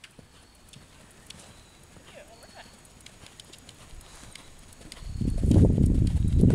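A horse cantering on arena sand. The hoofbeats are faint and muffled at first, then from about five seconds in turn into a loud, low, uneven thudding as the horse passes close.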